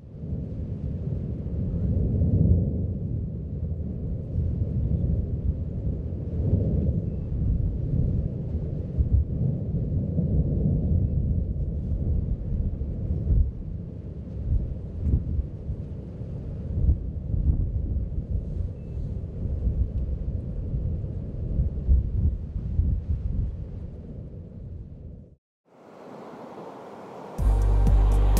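A deep, uneven rumble with its weight in the bass, which cuts off abruptly near the end. Music with sustained low notes starts just after it.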